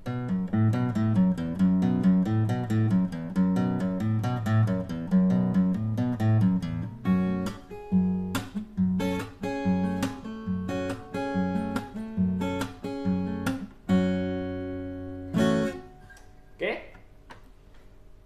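Cort MR710F BK acoustic dreadnought guitar with 10–47 strings: a fast fingerpicked pattern for about seven seconds, then separate strummed chords with short gaps. The last chord rings for a moment and is cut off a couple of seconds before the end.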